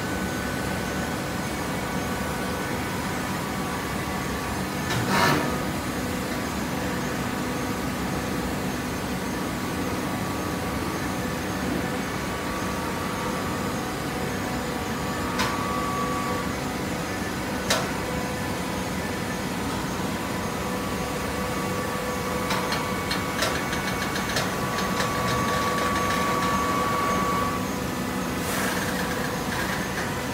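Horizontal hydraulic baler running: a steady hum with several held tones from its hydraulic power unit. A knock sounds about five seconds in, then two sharp clicks, and in the second half a run of rapid ticking with a steadier whine.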